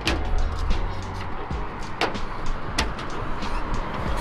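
A push-button flush hood latch clicks sharply as it is released, followed by two more clicks as the hood is lifted, over background music.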